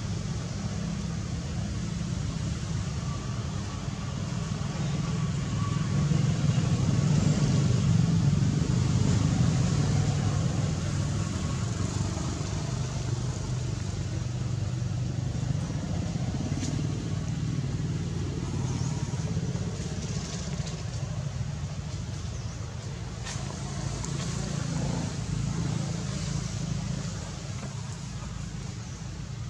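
Steady low rumble that swells louder about six seconds in and eases off after about ten seconds, with a few faint clicks scattered through it.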